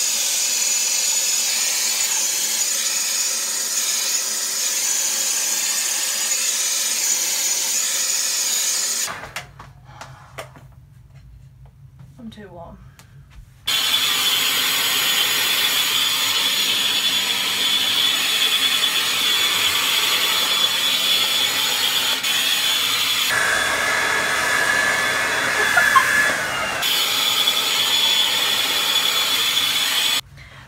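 Handheld hair dryer blowing, a steady rush of air with a high whine. It stops about nine seconds in and runs again about four seconds later, and its sound changes for a few seconds after the middle.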